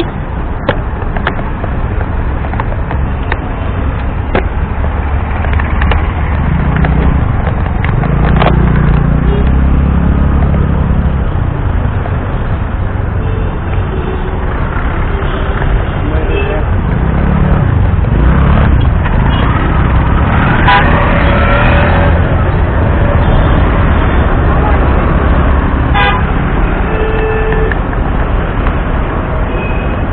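Busy city road traffic heard from a bicycle: a steady low rumble of engines, with vehicle horns honking several times through it.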